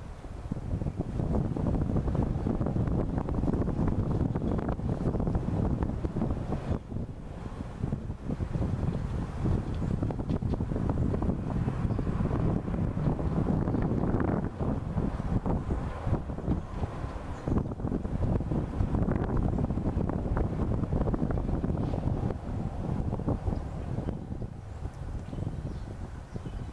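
Wind buffeting the camera's microphone: a gusty low rumble that swells about a second in, dips briefly twice, and eases near the end.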